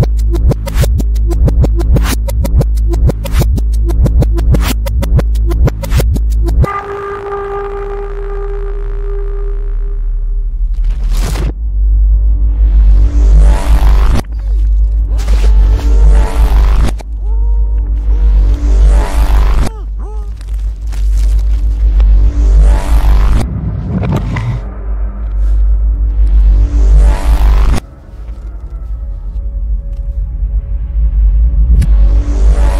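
Electronic music with heavy bass: a fast, dense beat for the first six seconds or so, then a held note and a run of rising sweeps, one every few seconds.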